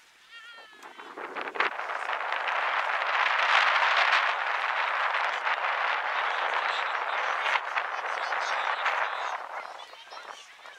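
Crowd of sideline spectators shouting and cheering, building about a second in, loudest around four seconds and dying down near the end.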